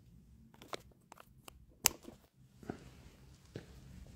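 Faint handling sounds of a charging cable being connected: a few small taps and clicks, with one sharp click about two seconds in, as power is hooked up to keep the battery from running down.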